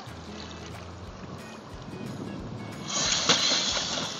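Background music, then about three seconds in a sudden loud rush of water noise as a swimming dog's automatic inflatable life jacket fires and inflates around it, churning the water.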